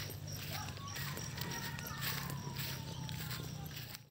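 Footsteps of a person walking on a dirt road, about two a second, over a faint steady hum. A faint tone falls slowly in pitch from about a second in.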